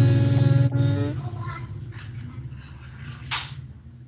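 A voice holding a long, steady hummed 'mmm', as if thinking of an answer, which stops about a second in. It is followed by quieter call background and a short breathy burst near the end.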